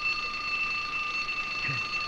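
Telephone bell ringing steadily, one unbroken high ring.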